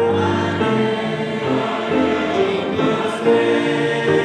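A church congregation singing a hymn together, many voices holding notes that move to new pitches every second or so.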